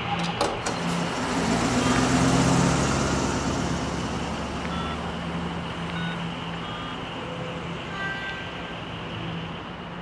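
A motor vehicle's engine and tyre noise, swelling over the first two to three seconds and then slowly fading as the vehicle pulls away, with a steady low engine hum underneath.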